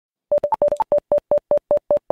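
A rapid series of short electronic beeps on one mid pitch, with a couple of higher beeps mixed in at first, then settling into an even rhythm of about five beeps a second. It is an intro sound effect.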